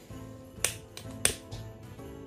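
Handheld butane torch lighter being lit: two sharp clicks of its igniter trigger, a little over half a second apart.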